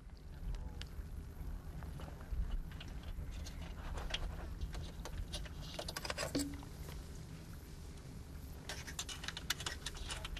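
Scattered light clicks and taps from hands working plastic cable plugs and the metal solar-panel frame, over a low steady background rumble.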